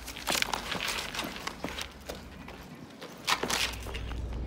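Footsteps on pavement mixed with small clicks and knocks of things being handled, busier at the start and again near the end.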